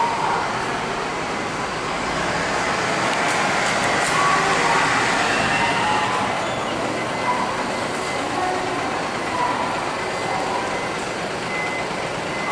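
A highway coach bus running as it manoeuvres slowly through a terminal bay, a steady vehicle noise with a few short faint beeps.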